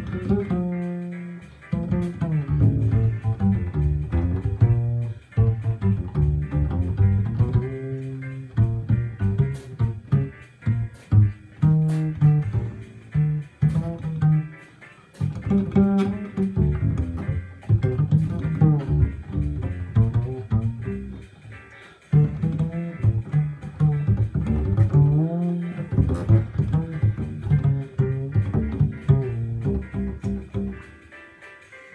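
Solo double bass played pizzicato: a continuous line of plucked low notes with a few sliding notes and short pauses between phrases.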